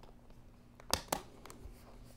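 A Poetic Revolution two-part rugged case snapping together as the phone, in its hard polycarbonate front frame, is pressed into the flexible TPU backing: two sharp plastic snaps about a second in, a quarter second apart, then a few faint ticks. It sounds painful.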